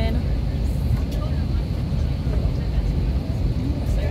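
Steady low drone of an airliner cabin's air-conditioning and ventilation while the plane is parked at the gate, with faint voices in the background.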